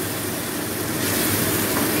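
A stream of cold water pouring into a hot kadai of oily fried masala, splashing and sizzling as a steady rushing hiss.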